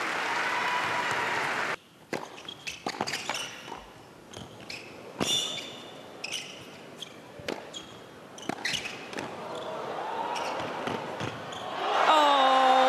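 Crowd applause in a large indoor arena, cut off suddenly about two seconds in. Then comes a tennis rally: a serve and a string of sharp racket-on-ball strikes, with short high squeaks of shoes on the hard court. The crowd noise swells again near the end as the point closes.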